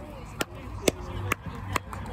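Sharp knocks about twice a second in an even walking rhythm, footsteps of someone walking with the phone, over faint background voices.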